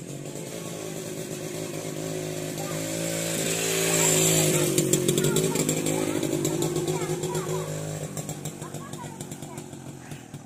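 A small-engine motor vehicle passing by: the engine note grows louder to a peak about four seconds in, its pitch dipping as it goes past, then fades away.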